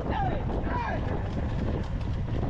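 Wind buffeting the microphone over a steady low rumble from riding on a motorbike close behind a racing bullock cart. Men on the cart shout to urge on the bulls, with two falling calls in the first second.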